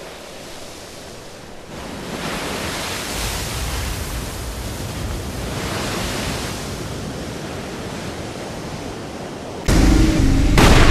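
Rushing noise that swells about two seconds in and rises and falls, then a sudden loud boom near the end.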